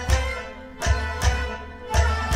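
Instrumental folk music without singing: a hand drum beats out deep bass strokes, about four in two seconds, over a steady, sustained melody instrument.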